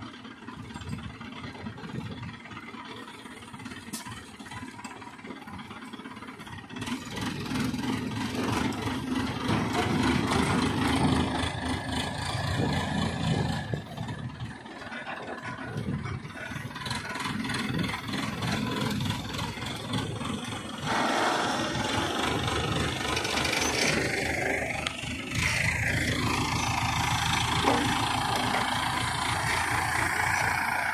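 Diesel engine of an ACE pick-and-carry mobile crane running under load as it hoists a bundle of concrete railway sleepers. It grows louder about a quarter of the way in and again past two-thirds, revving harder, with a tone that dips and rises again near the end.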